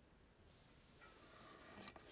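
Near silence: faint room tone, with a faint click near the end as hands pick up the thread and needle.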